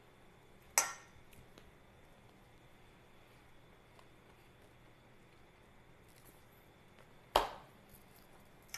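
Quiet room tone broken by two short, sharp clinks: a metal spoon against a stainless-steel mixing bowl about a second in, and a louder knock near the end.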